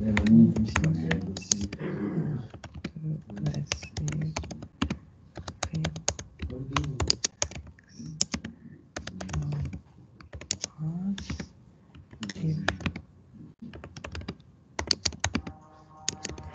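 Typing on a computer keyboard: irregular runs of quick key clicks broken by short pauses.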